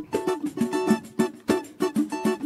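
Instrumental samba groove: an acoustic guitar strummed and picked in a quick, even rhythm, punctuated by sharp tamborim strokes.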